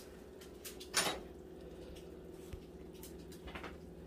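Oven rack and glass baking dish being handled as the dish is taken out of the oven: one short clatter about a second in, then a few faint knocks.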